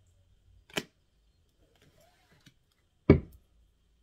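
Two sharp taps, a light one under a second in and a much louder knock about three seconds in: cards being laid down on a table.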